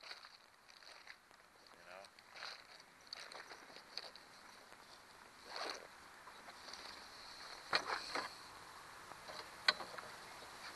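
Scattered sharp clicks and light knocks of metal pliers and fishing gear being handled in a small plastic boat, with a few louder clicks in the last few seconds over a faint steady hiss.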